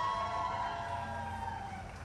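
Police siren of a motorcade escort wailing in one slow rise and fall, over the low running noise of a vehicle.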